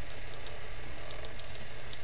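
Homemade capacitor pulse motor running steadily, a low whirr with faint, regular ticking about three times a second.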